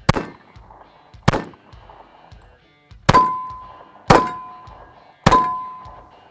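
Five shots from a Smith & Wesson 1911 E-Series .45 ACP pistol, spaced a second or two apart. Each of the last three is followed by a steel target ringing with a steady tone that fades away: hits on steel.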